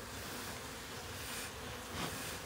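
Honeybees buzzing around a honeycomb held up from the hive, a faint steady hum.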